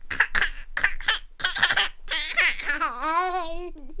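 Children laughing in short bursts, then a longer wavering shriek-laugh.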